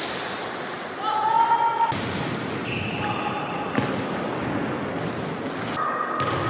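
Table tennis ball ticking off the table and bats during play, over the babble of voices in a large, echoing sports hall.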